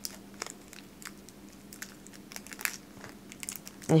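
Crinkly candy bar wrapper being peeled open by hand: a scattered run of faint crackles and sharp little clicks.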